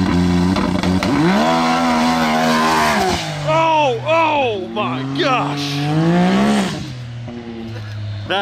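Turbocharged Can-Am Maverick X3 side-by-side engine idling, then revving hard as it pulls away. Its pitch climbs and holds, then rises and falls several times under throttle, and the sound drops off near the end as it drives away.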